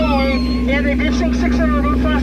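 Voices talking over the steady low hum of a Jungle Cruise ride boat's motor, with a constant drone underneath.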